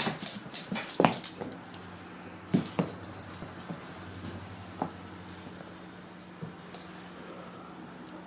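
A border collie puppy and a pug playing, with a few brief, sharp dog sounds about one, two and a half and nearly five seconds in, over a faint steady low hum.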